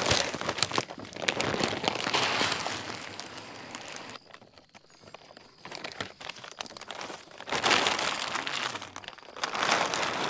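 Feed sacks crinkling and rustling as they are handled and shelled corn is poured into a tripod deer feeder's hopper. The sound comes in two loud spells, one at the start and one near the end, with a quieter gap between.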